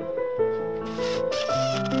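Background piano music, joined about a second in by a cordless drill running in two short bursts, driving screws into layers of MDF glued up for a bending mould.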